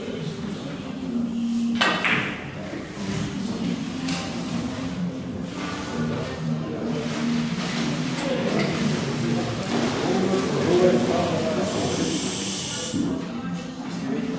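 One sharp click of a carom billiards shot, the click of cue and balls, about two seconds in, followed near the end by a brief scratchy hiss of chalk being rubbed on a cue tip.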